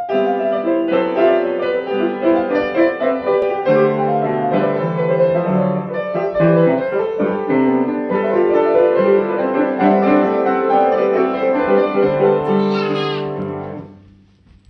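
Two pianos played together, a Yamaha grand and an upright, in a busy piece with many notes sounding at once; the playing stops just before the end.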